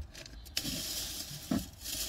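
Rustling and rummaging in a car's back seat, with a soft knock at the start and another about a second and a half in.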